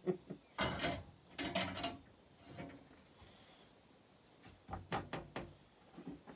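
Cookware and utensils being handled in a small wooden boat galley: two short clattering clunks in the first two seconds, then a quick run of sharp knocks about five seconds in.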